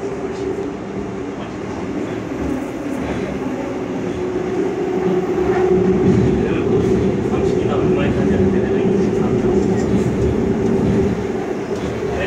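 Seoul Subway Line 2 train running between stations, heard from inside the car: a steady rumble of running noise with a humming tone. It grows louder about halfway through and stays loud.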